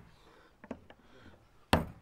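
A couple of faint clicks, then near the end a single sharp hammer blow on a chisel held against the lid of a tin can.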